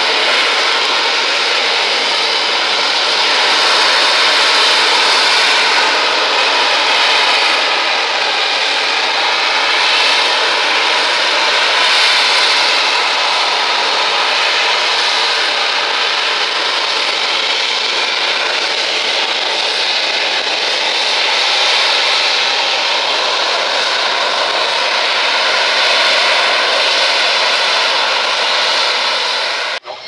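Harrier jump jet hovering, its Rolls-Royce Pegasus vectored-thrust turbofan giving a loud, steady jet noise with faint whining tones over it. The noise cuts off suddenly just before the end.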